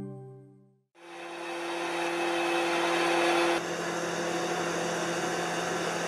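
Heavy machinery of a missile transloader vehicle running: a steady whirring noise with a low hum that starts about a second in and eases slightly about three and a half seconds in.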